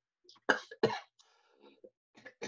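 A person coughing twice in quick succession, followed by a softer rasp in the throat.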